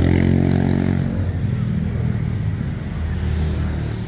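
A motor engine running with a low, steady hum, strongest in the first second, easing off, then growing again near the end.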